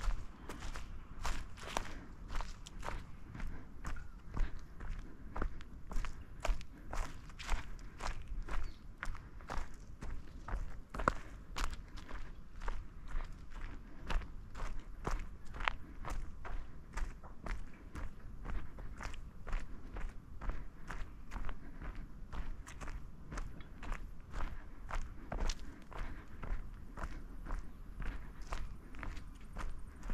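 Footsteps of a walker on a gravel forest track, a steady pace of about two steps a second, over a low steady rumble.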